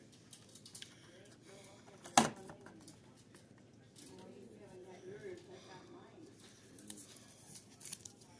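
Quiet handling of trading cards at a table, with one sharp tap about two seconds in and a few small clicks after it; faint low murmuring in the middle.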